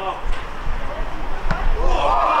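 A football struck once, a sharp thud about one and a half seconds in, amid players' shouts on the pitch.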